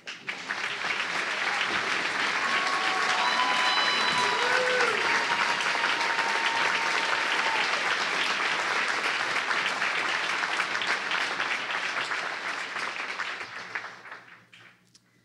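A large audience applauding steadily after a poem reading, with a few calls from the crowd partway through. The clapping builds quickly at the start and dies away near the end.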